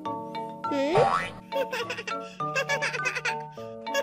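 Children's background music with a cartoon sound effect: a swooping boing-like glide that dips and then rises sharply in pitch about a second in.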